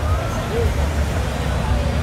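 City street ambience: a steady low rumble of traffic with faint voices of people talking.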